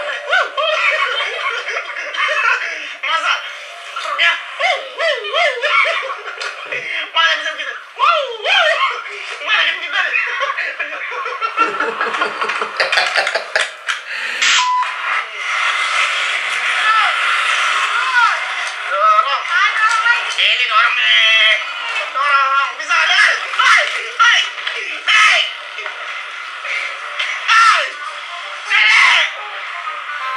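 People's voices with background music; no motorbike engine stands out.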